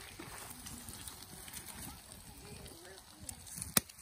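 Faint sizzling and crackling from a pan of brook trout frying in hot melted butter over a campfire, with one sharp click near the end.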